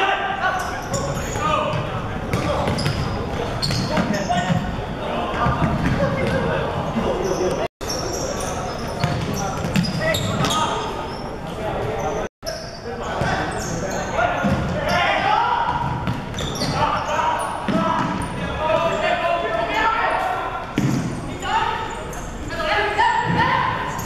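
Futsal match sound in an echoing sports hall: players shouting to each other, with the ball being kicked and bouncing on the wooden court. The sound drops out briefly twice where the footage is cut.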